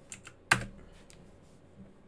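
A few keystrokes on a computer keyboard, with one sharper, louder key press about half a second in.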